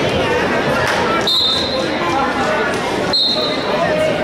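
Two short, high referee's whistle blasts about two seconds apart, over steady crowd chatter in a gym.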